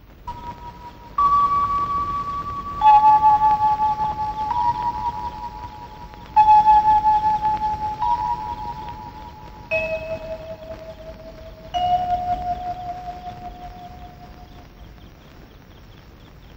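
Film background score: a slow melody of single chime-like notes, about eight in all, each struck and left to ring and fade while the next one sounds.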